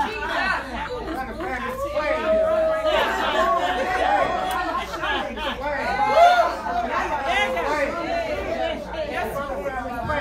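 Overlapping voices of a church congregation and speakers calling out together, with no single voice leading.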